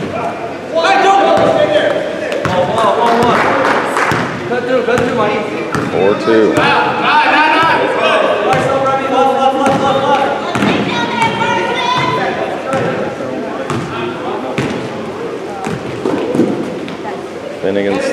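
A basketball being dribbled on a gym floor, repeated bounces under people's voices calling out in the gym.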